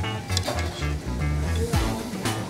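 Background music with a steady beat and a moving bass line.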